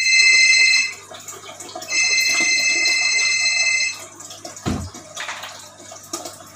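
Mobile phone ringing with an electronic ring tone: a short ring of about a second, then a longer ring of about two seconds, both steady and high-pitched. A dull low thump follows near the end.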